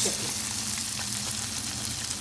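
Potato gnocchi sizzling in hot olive oil (the oil from a jar of sun-dried tomatoes) in a stainless steel pan, just after being dropped in. The sizzle is a little louder at the start and then settles to a steady hiss.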